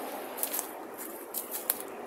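A handful of short crunches and rustles of footsteps and brushing leaves as someone pushes into scrub, over a steady hiss of motorway traffic.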